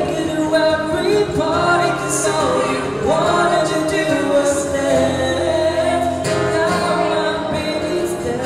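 A man singing a slow melody into a microphone over acoustic guitar accompaniment, the voice sliding up into notes and holding one long note through the second half.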